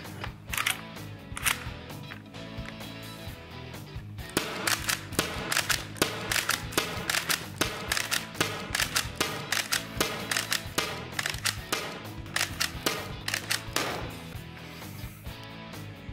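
Umarex HDX CO2 pump-action paintball shotgun firing a run of shots in quick succession, with sharp cracks that come thick and fast from about four seconds in, over background music.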